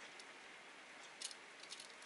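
Near silence: faint room hiss, with a couple of faint short clicks a little past the middle.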